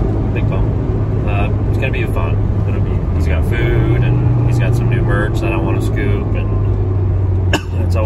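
Steady low drone of engine and road noise inside the cabin of a moving car, under a man talking.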